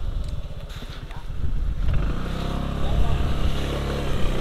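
Motorcycle engine idling with a fast low pulse; about halfway through a steadier, stronger engine hum comes in and holds.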